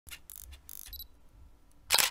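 Camera shutter sound effect: a few soft clicks in the first second, a short high beep about a second in, then a loud shutter click near the end.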